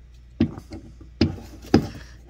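Three short knocks and rubs as a thumb presses the rubber charging-port plug on a Sofirn BLF LT1 lantern's metal body, trying to push it back into its port; the plug is not seating.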